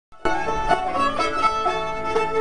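String band with fiddle and banjo playing a dance tune together, the fiddle bowing the melody over the banjo's steady picked rhythm. The tune is already under way when it cuts in, just after the start.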